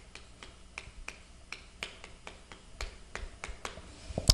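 Chalk tapping against a chalkboard as a line of words is written: a quick, irregular string of short, sharp clicks.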